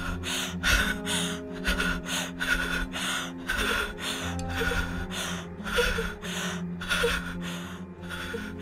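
A woman breathing in rapid, ragged gasps, about two to three breaths a second, the panicked breathing of someone terrified. A low, steady music drone sounds underneath.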